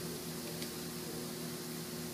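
A steady low hum made of a few held tones over an even hiss, with no distinct sounds: machine or fan background noise in a room.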